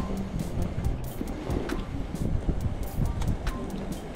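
Daiwa Exceler LT 2000 spinning reel being cranked to bring in a hooked fish, under a steady rumble of wind on the microphone, with a few light clicks.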